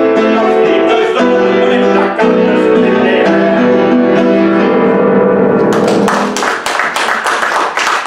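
Grand piano playing the closing chords of a song's accompaniment, with no singing. About six seconds in the chords give way to audience applause.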